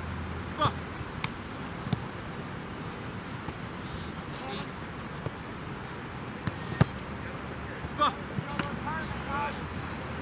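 Steady outdoor background noise with a few sharp knocks, the loudest about two-thirds of the way through, and brief distant voices calling near the end.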